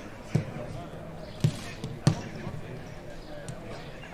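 Footballs being kicked on a grass pitch: three sharp thuds in the first half, roughly a second apart, with fainter knocks after them, over distant voices.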